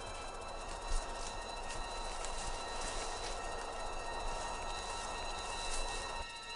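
Dark, suspenseful ambient drone: a rushing, rumbling noise bed with a few high tones held steady, and a brief thump about a second in.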